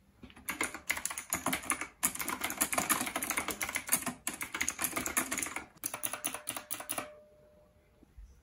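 Fast typing on a Knewkey typewriter-style mechanical keyboard with round keycaps: a dense clatter of key clicks with a few brief pauses, stopping about a second before the end.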